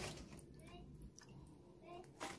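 Near silence, broken by two faint, short animal calls.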